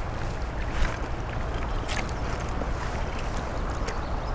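Shallow, fast-flowing brook rushing steadily over rocks close by, with a low rumble beneath, and a couple of faint knocks about one and two seconds in.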